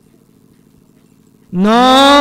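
Faint background noise, then about one and a half seconds in a man's voice loudly calls out a count ("nau", nine) as one long call rising in pitch.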